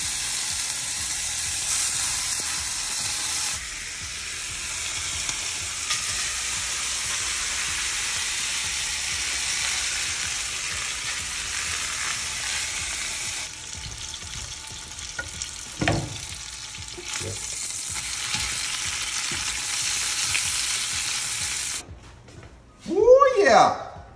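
Bacon, then beaten eggs, sizzling in a hot frying pan on a gas hob: a steady frying sizzle that drops in level a few times. A single knock, like a utensil or pan against the stove, about three-quarters of the way through.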